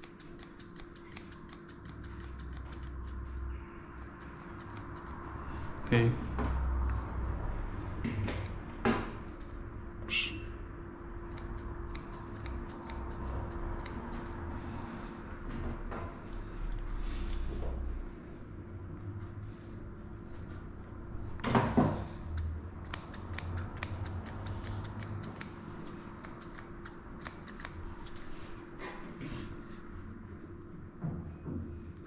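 Grooming scissors snipping close around a dog's face in quick runs of short, sharp clicks, with a couple of louder knocks in between.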